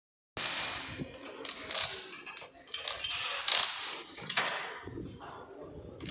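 Steel lifting chains rattling and clinking in several bursts as they are handled around a stack of steel sheets, over a faint steady high whine.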